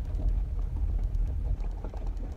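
Low, steady rumble of a car's engine and road noise inside the cabin of a moving vehicle.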